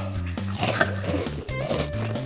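Background music with a steady, stepping bass line, joined by a couple of short, faint high-pitched sounds.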